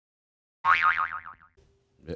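Cartoon 'boing' sound effect edited into the audio: a wobbling twang whose pitch slowly falls, starting about two-thirds of a second in and fading out within a second.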